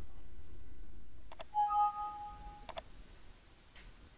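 A short electronic beep: a click, then two steady tones held together for about a second, cut off by a couple of clicks, over faint room noise.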